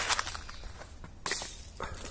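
A stick knocking and swishing in the branches of a service tree to bring down a fruit, with leaves rustling: a sharp knock at the start and a short rustling swish about a second and a half in.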